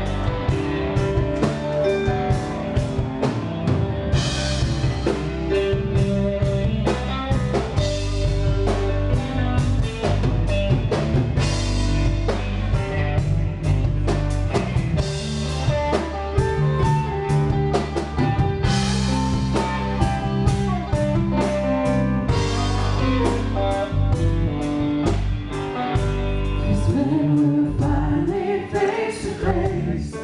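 Live worship band playing a song: drum kit, keyboard and electric guitar, with singing. The drum kit keeps a steady beat with cymbal swells every few seconds.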